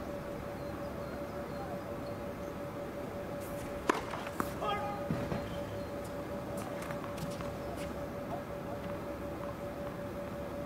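A steady faint hum with a few sharp, irregular knocks of a tennis ball on the hard court, the loudest about four seconds in and more around seven seconds, plus a brief pitched call in the middle.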